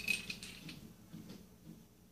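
Faint light clicks and taps of a small black barrel-clamp rail mount being handled.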